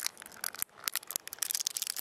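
Small metal Live Fire Sport fire-starter tin being handled and pried open by hand: a run of irregular clicks and light scrapes.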